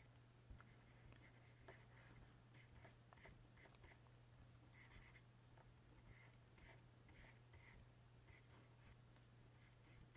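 Near silence: room tone with a steady low hum, and faint short soft scratches and a few light ticks scattered throughout.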